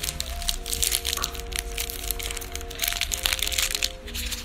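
Foil wrapper of a chocolate bar crinkling and crackling in quick, irregular bursts as it is opened by hand, over background music.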